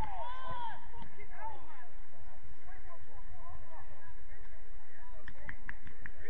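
Distant shouts of footballers calling across the pitch, loudest in the first second or so, over a steady low rumble. A few sharp knocks a little after five seconds in.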